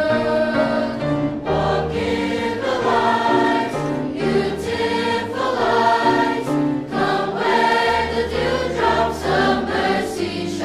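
Children's choir singing in unison, with piano accompaniment carrying low sustained notes underneath.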